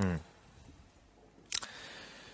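A man's short 'mm', then quiet room tone broken by a single sharp click about one and a half seconds in.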